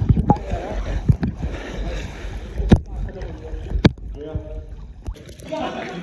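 Water churned by a snorkeler's finned kicks, heard muffled through an underwater camera: a low churning rumble with bubbles and a few sharp clicks, two of them about three and four seconds in.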